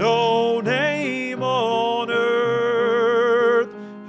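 A man singing a gospel hymn with piano accompaniment: a few short phrases, then one long note held with vibrato that ends shortly before the close.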